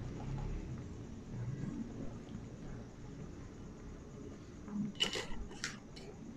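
Low, steady rumble of a pot of fish and vegetable broth simmering on a gas stove, with two sharp clicks about five seconds in.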